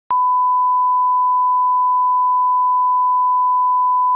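Broadcast line-up test tone: a single pure steady tone at one pitch that starts abruptly just after the beginning and holds unchanged, with no other sound.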